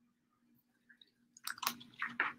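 Paper crinkling and rustling as it is handled, a short cluster of crackly rustles starting about one and a half seconds in, over a faint steady hum.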